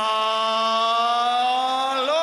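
Ring announcer holding one long, drawn-out shout of the winning boxer's surname, its pitch slowly rising.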